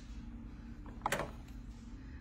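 Faint steady room hum with one brief tap or scrape about a second in, as a clear acrylic quilting ruler is handled over fabric on a cutting mat.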